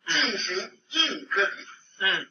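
A man speaking Chinese, heard through the thin, band-limited sound of a played-back online video: an official announcing that a household is under physical isolation.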